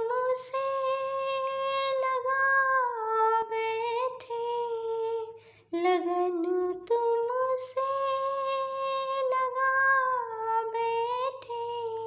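A woman humming a slow, wordless devotional melody in long held notes, alone. It comes as two similar phrases with a short break between them, each dipping in pitch near its end.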